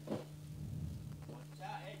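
A faint, low voice murmuring under a steady electrical hum, with one short knock just after the start.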